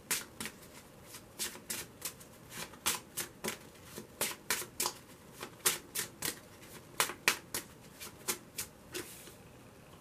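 A deck of large tarot cards being shuffled by hand, overhand, with packets lifted off and dropped back onto the deck. It makes a quick, irregular run of sharp card slaps, about three a second, that stops shortly before the end.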